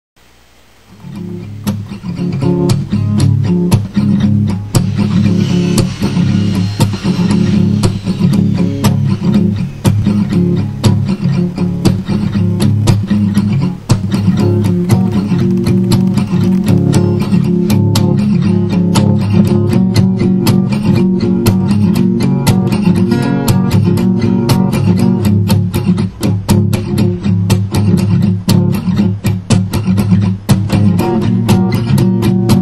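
Guitar music: a guitar picked in a fast, dense run of notes, fading in over the first two seconds and then playing on at an even level.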